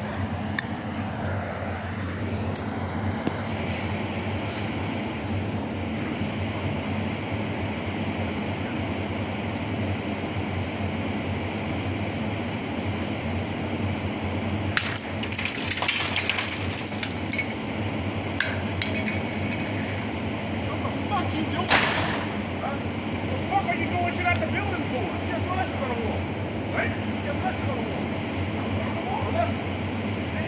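Steady low background hum, with a few sharp clicks and knocks about halfway through and one more a few seconds later.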